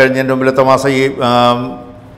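A man reading aloud in Malayalam in a level, drawn-out monotone, with long held syllables. It is speech only.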